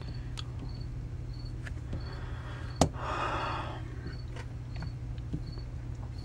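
Lighters and small gear being handled and set down on a hard desktop: a few light clicks, then one sharper knock about three seconds in followed by a brief rustle, over a steady low hum.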